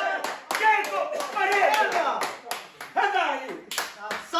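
Several men shouting and cheering in celebration of a goal, with scattered hand claps among the yells.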